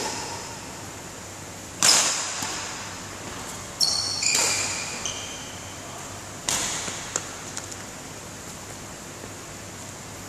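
Badminton rackets hitting a shuttlecock in a feeding drill: three sharp hits about two seconds apart, the second with a high ringing ping from the racket strings, each echoing briefly in the sports hall.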